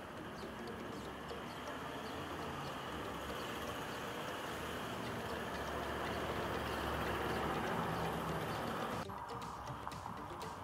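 Outdoor town ambience: a steady rumble of vehicle traffic that swells over several seconds, with faint bird chirps. It drops suddenly about nine seconds in.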